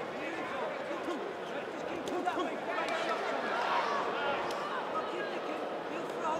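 Boxing crowd, many voices shouting and chattering at once, a little louder from about two seconds in.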